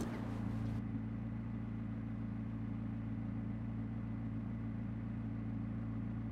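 A steady low mechanical hum at an unchanging pitch, with no revving or other events.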